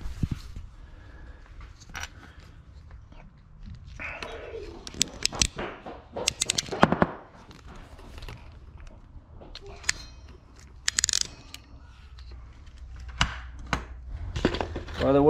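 Irregular sharp clicks and snaps of a hand wire stripping/crimping tool being handled and worked, with wire and tool knocking on a glass bench top. The clicks are thickest in the middle.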